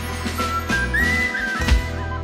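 A folk band plays an instrumental passage. A high whistled melody slides between notes over sustained low chords, with a bass-drum beat near the end.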